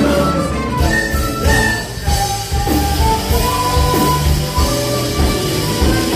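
A live band playing Morenada dance music: a held melody line over a steady bass and drum beat.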